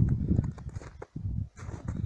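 Footsteps crunching in packed snow in an uneven rhythm, over a low, gusty rumble of wind on the microphone.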